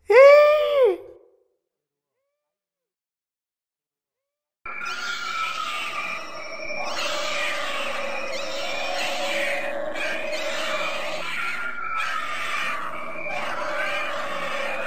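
A man's short cry of delight, about a second long, rising and then falling in pitch. Then silence, and from about five seconds in, a steady layered background sound with several pitched lines.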